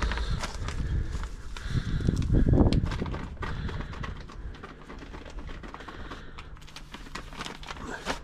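Plastic bag crinkling and plastic tubs being handled, with scattered small clicks and taps.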